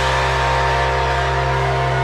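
Live rock band holding a sustained chord, with electric guitar ringing over a steady low bass drone.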